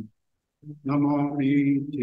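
A man chanting a Sanskrit invocation. His voice breaks off into a half-second of dead silence, then comes back on a long, steady held note.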